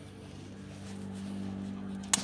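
A steady, low machine hum, like a motor running.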